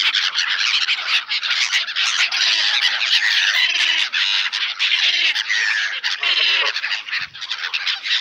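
A flock of black-headed gulls squawking continuously over one another while they crowd in for bread. A lower call cuts in briefly near the end.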